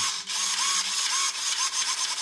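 Small hobby RC servo whirring as it drives the glider's elevator back and forth: a steady gear-motor buzz in quick repeated strokes. The servos are old ones being tested before the plane is finished.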